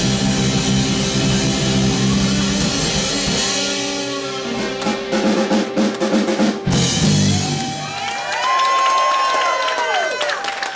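Live rock band of drum kit, electric guitar and bass playing a song that breaks off about two-thirds of the way in and closes with a short final burst. In the last couple of seconds the audience cheers with whoops.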